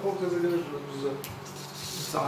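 A man drinking from a cup: a short hummed voice at the start, then quieter rubbing noises and a few light clicks as the cup is handled and set down.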